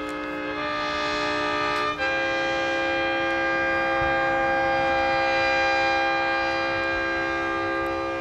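Yamaha music siren, a rooftop set of 24 sirens each tuned to its own note, sounding steady held chords. The notes change twice in the first two seconds, then one chord is held for about six seconds.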